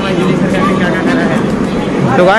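Indistinct voices talking over a steady low hum from the railway station below.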